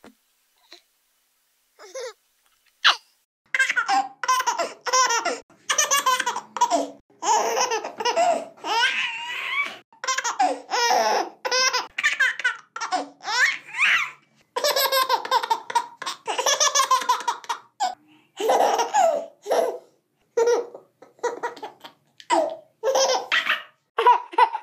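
A baby laughing in quick, repeated bursts with short breaths between them. The laughter starts in earnest a few seconds in, after a few short isolated sounds.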